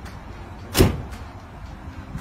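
The tailgate of a Jeep Gladiator pickup slammed shut once, a single sudden bang a little under a second in.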